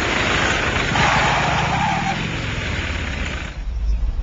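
A vehicle engine running loudly under a rough rushing noise, which drops away about three and a half seconds in.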